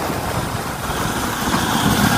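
Bajaj Pulsar motorcycle's single-cylinder engine running steadily while the bike rides along.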